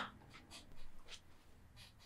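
Near-quiet room tone with a faint, brief rustle about a second in.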